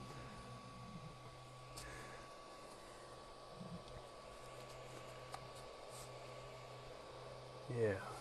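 Faint steady hum with a thin high tone, with a few soft ticks and light rustles as a sheet of paper is slid between the nozzle and the bed of an Ender 3 V2 3D printer to check bed level.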